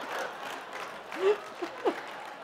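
Live audience applauding and laughing, the applause dying away, with a few short bursts of laughter in the second half.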